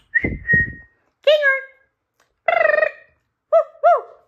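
A short high whistle in the first second, with a few low thumps under it, followed by four short high-pitched cries, the last two a quick rising-and-falling pair.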